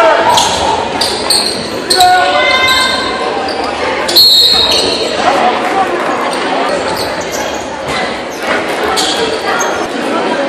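Crowd and players' voices in a reverberant gym during a basketball game, with a basketball bouncing on the hardwood floor. About four seconds in, a short high referee's whistle blast stops play.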